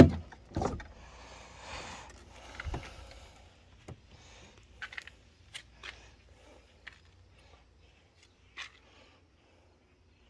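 Pickup truck door latch clicking as the outside handle is pulled and the door is opened, a second click following about half a second later. Faint scattered clicks and rustles of handling follow, dying away near the end.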